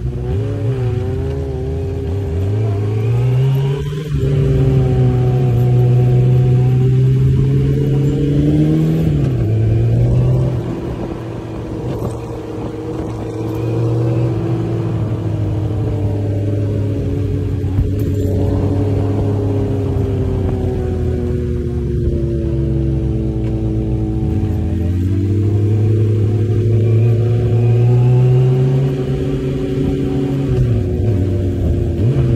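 Suzuki Bandit inline-four motorcycle engine under way, heard close up from the bike. The revs climb over the first few seconds and hold, ease off around ten seconds, then run steady. They climb again near the end before easing off.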